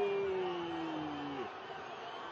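A male football commentator's long, drawn-out "Gooool" shout, held on one slowly falling note that dies away about one and a half seconds in, leaving faint background noise.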